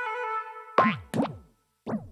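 Cartoon "boing" bounce sound effects: three short ones, each falling in pitch. They follow a held musical chord that fades out within the first half second.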